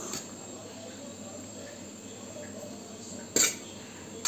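A metal serving spoon clinks once against metal dishware about three and a half seconds in while rice is served onto brass plates, over a faint steady high-pitched background buzz.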